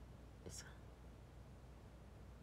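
Near silence: room tone, with one short, faint breath about half a second in.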